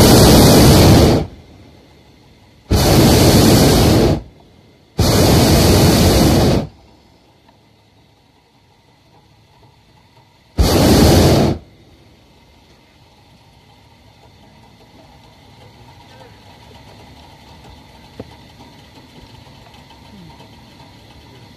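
Hot air balloon's propane burner firing in four loud blasts of one to two seconds each, the last about ten seconds in.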